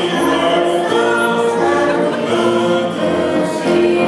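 A small group of voices singing a slow sacred song in held notes.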